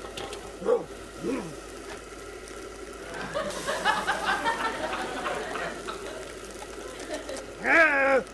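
Brief non-word vocal sounds and chuckling-like voice over a steady background hiss, ending in a loud short exclamation.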